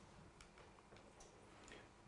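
Near silence: faint room tone with a few faint scattered ticks.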